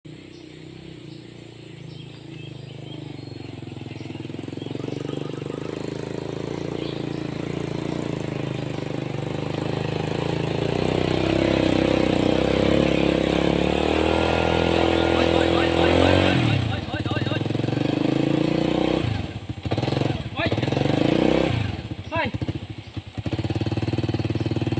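Small step-through motorcycle engine working hard up a steep dirt slope, growing steadily louder as it approaches. Over the last several seconds the revs repeatedly drop away and pick up again, as the bike struggles on the climb and is pushed.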